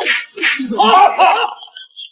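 Sharp slaps, two of them about half a second apart, followed by a brief wavering voice-like sound.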